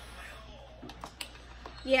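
A few sharp clicks of mussel shells knocking against each other and the plastic container as fingers pick through them.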